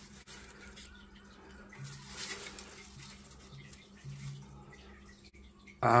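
Quiet handling sounds: faint rustling as sunflower stems are pushed into dry straw in a glass tank, a little louder about two seconds in, with a faint low hum in three short stretches.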